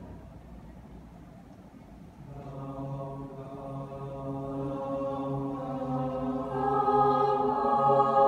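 Mixed high school choir singing a cappella. After a short lull in the first two seconds, the voices come back in with long held chords that grow louder toward the end.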